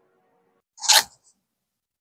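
A single short, hissy burst of sound about a second in, with quiet on either side.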